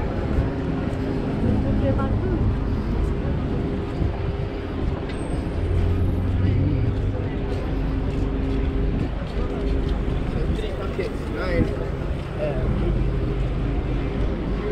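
Busy street ambience: a steady rumble of road traffic with a vehicle engine running nearby, and passers-by talking in the background.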